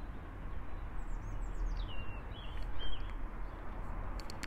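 A small songbird calling: a quick run of descending chirps about a second in, then a few short wavering notes, over a steady low rumble.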